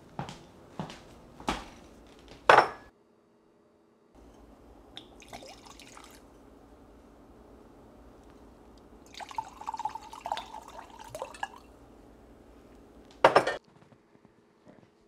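A few sharp knocks and clinks of glassware, the loudest about two and a half seconds in, then a drink poured into a glass for about two seconds, and a loud glass clink near the end.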